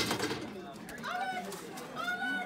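A person's voice making short wordless sounds, with a sharp click at the very start.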